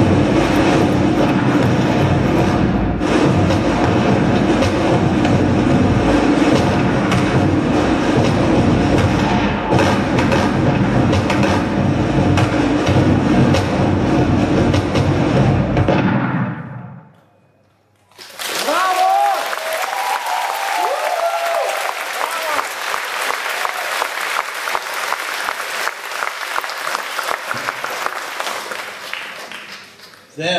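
Dense soundtrack music with sustained tones, accompanying a projected film, fades out about sixteen seconds in. After a brief hush, an audience applauds steadily.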